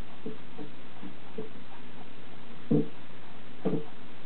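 A handful of soft, low bumps at uneven intervals over a steady hiss, the loudest about two-thirds of the way in and another shortly before the end.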